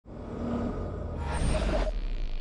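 Title-graphic sound effect: a deep rumble that swells, with a rushing whoosh building over the last part.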